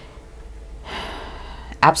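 A woman's audible intake of breath, a soft hiss lasting under a second, then her speech begins near the end.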